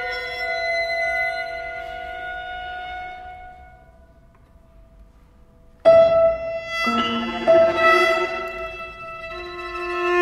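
Contemporary chamber music for violins, keyboard and percussion: held string tones fade out to near silence about four seconds in, then a sudden loud entry of several held pitches near six seconds, with more instruments joining about a second later.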